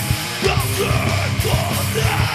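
Heavy metal band playing live, with distorted electric guitars, bass and drums, and a yelled vocal coming in about half a second in.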